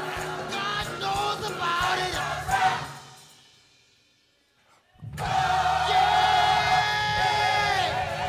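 Church choir singing with instrumental accompaniment. The music fades away about three seconds in, is nearly silent for about two seconds, then comes back suddenly with a long held chord.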